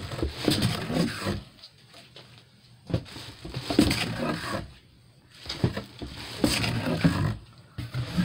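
Shrink-wrapped scrapbook albums being handled and pulled out of a cardboard box: crinkling plastic wrap and cardboard scraping, in three bursts of rustling.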